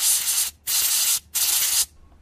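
Compressed-air blow gun blowing air into a MAP sensor's port to dry it after cleaning. Three hissing blasts of about half a second each, with short breaks between them.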